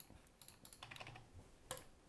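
Faint computer keyboard keystrokes: several light, irregular key clicks, with a louder click near the end.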